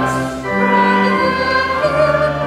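A woman singing a slow church song, holding each note before moving to the next, over a sustained accompaniment.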